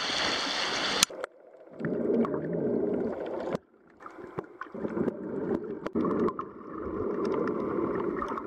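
Water sloshing at the surface against the camera, then about a second in the camera goes underwater and the sound turns muffled: a low rushing of water that swells and fades, with scattered small clicks and ticks.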